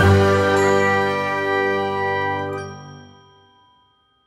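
Final chord of a logo intro jingle: a bright, bell-like chord struck once and left to ring, fading away over about three and a half seconds.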